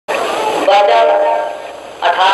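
A singing voice holding long, drawn-out notes, starting abruptly and fading away over the last half second.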